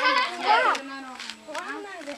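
Children talking over one another, with one voice holding a long drawn-out sound about a second in.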